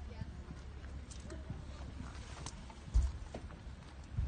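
Hoofbeats of a horse cantering a show-jumping course on the arena's sand surface, over a steady low rumble. A sharp thump about three seconds in is the loudest sound.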